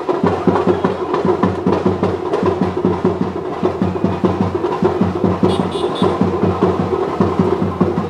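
Drums played in a fast, steady rhythm, several strokes a second, with no pause.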